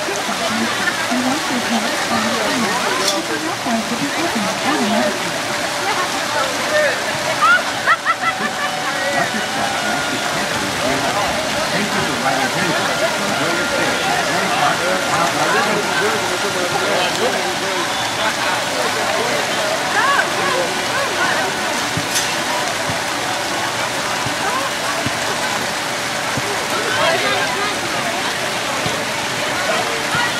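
Fountain jets splashing steadily into a shallow pool, with the chatter of a crowd of people around it.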